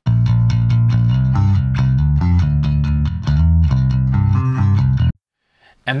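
Electric bass guitar played solo through a Gallien-Krueger 800RB bass amp emulation, EQ'd with a lower-mid scoop and a peak around 3.3 kHz, playing a driving riff of low notes. It stops abruptly about five seconds in.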